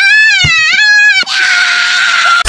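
A child screaming at a high pitch, the scream wavering and breaking once, then turning harsher and noisier for its last part.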